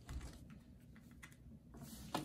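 Tarot cards being picked up off a tabletop and gathered into a hand, with a few faint scattered clicks and taps.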